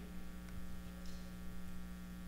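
Steady low electrical mains hum, a constant drone with a stack of fainter higher tones above it.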